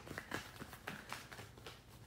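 A deck of cards being shuffled by hand: a faint, irregular run of light card snaps and taps.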